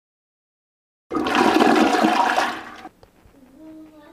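Toilet flushing: a loud rush of water starting about a second in and cut off suddenly near the three-second mark.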